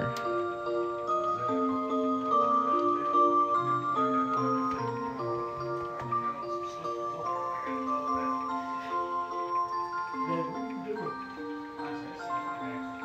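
Rhythm Small World musical motion clock playing an electronic tune of held notes, one after another, as its dial sections open and turn.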